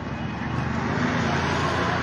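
Outdoor street noise: a steady wash of traffic and crowd sound that grows louder about half a second in.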